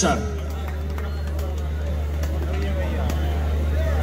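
A steady low hum from a live stage sound system, with faint voices of people talking in the crowd and on stage.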